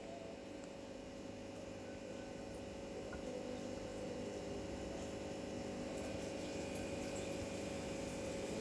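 Faint steady hum made of several held tones over a light hiss, slowly growing a little louder, from an unseen machine or appliance.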